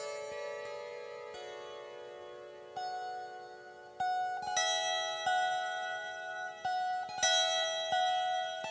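A Crescent Moon lyre, a small round hand-held lyre, plucked slowly in a free improvisation: single notes ring on and overlap, fading through the first few seconds, then a string of brighter, louder plucks comes in the second half.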